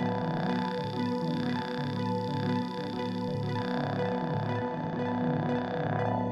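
Looped electronic music playing out of the MolliLooper looper plugin: held tones over a repeating pattern of low notes, with soft swells about once a second.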